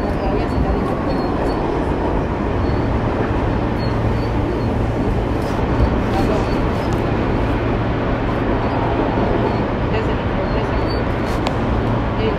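New York City Subway F train pulling into the station and rolling past close by: a steady, loud rumble of steel wheels on rail and running gear.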